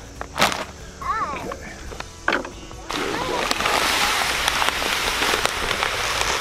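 Seed mix poured from a bag into a cloth seed-spreader bag: a steady, dense hiss of small seeds pouring, starting about three seconds in. Before it come a few short rustles and clicks of the bags being handled.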